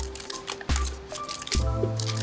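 Background music with a steady bass beat, a little more than one pulse a second, under held tones.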